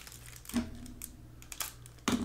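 Foil trading-card pack wrapper being handled and opened by hand: soft crinkling and small scattered clicks.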